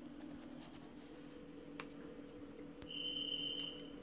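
Quiet steady electrical hum with a few faint clicks, and a brief high-pitched whine about three seconds in that lasts under a second.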